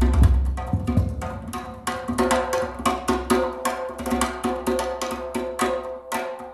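Live instrumental music: acoustic guitars playing sustained notes over busy percussion, with many quick struck strokes.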